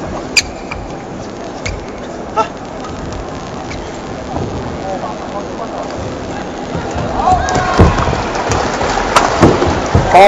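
Steady murmur of an indoor badminton arena crowd, with a few sharp clicks in the first three seconds. From about seven seconds in, the noise swells, with squeaks and voices and a couple of sharp racket hits on the shuttlecock near the end as play starts.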